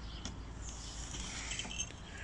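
Quiet garden background with a few faint, short, high bird chirps.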